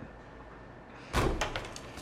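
A door banging: a sudden loud knock about a second in, followed by a few lighter knocks.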